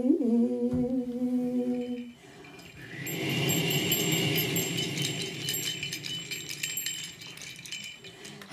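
A woman's voice through a microphone holding one long sung note, with a slight waver at the start, for about two seconds. After a short pause, a softer, breathy sound with faint high chiming runs on until near the end.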